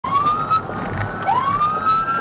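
Police car siren wailing over road noise. A rising tone breaks off about half a second in, and a new slow rise starts from lower pitch just past a second in and climbs to a held high note.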